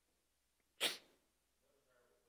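A single short sneeze about a second in, a brief hissy burst against a quiet room.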